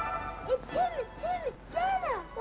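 Children's voices giving a run of high, arching 'ooh' exclamations, about four in a row, each rising and falling in pitch, the last sliding down near the end.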